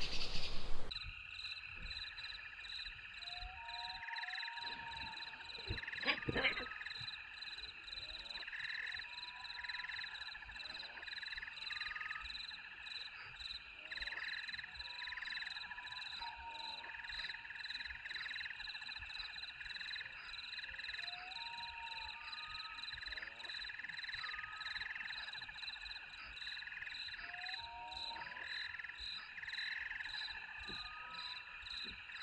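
A steady night-time chorus of calling frogs and insects: thin high-pitched chirring tones held throughout, a call pulsing about once or twice a second, and short rising calls scattered through it. It opens with a second of loud noise, and a brief knock sounds about six seconds in.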